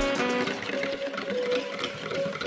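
Background music with a soft held melody, over rapid light clicking of a wire whisk beating a milk batter against a stainless steel bowl.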